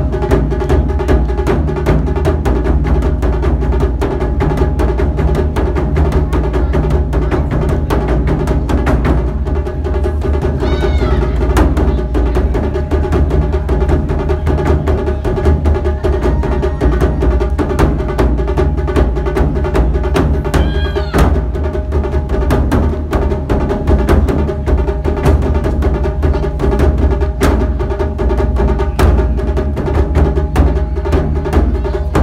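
Japanese taiko drums played in an ensemble, a fast, dense, unbroken run of strikes. Two short pitched calls rise and fall over the drumming, about eleven and twenty-one seconds in.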